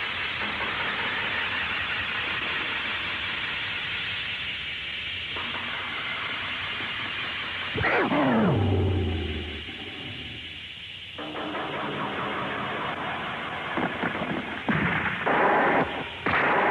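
Dubbed 1970s tokusatsu monster-fight sound effects: a steady hiss at first, then a monster's pitched cry that falls sharply about halfway through and ends in a low rumble. A run of sharp bursts comes near the end.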